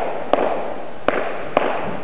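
Hand claps beating out a rhythm: three sharp claps, the last two about half a second apart.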